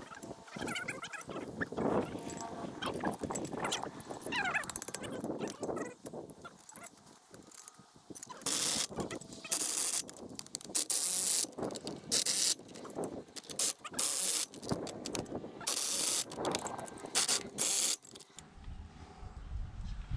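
Hand ratchet wrench tightening the flange nuts on a fire hydrant extension: repeated short runs of ratchet clicking, each about half a second, through the second half.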